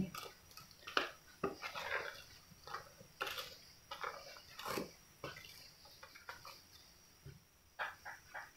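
Wooden spatula knocking and scraping against a stainless steel pot while stirring fried bread slices in milk, a scatter of soft irregular clicks and scrapes.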